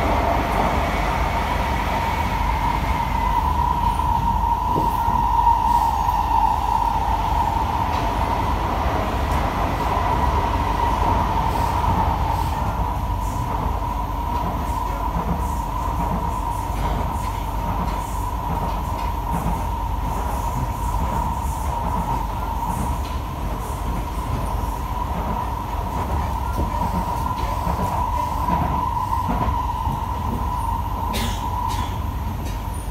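Interior of a Kawasaki & CSR Sifang C151A metro train carriage running along the line: a steady rumble with a constant high whine over it, and light clicks in the second half.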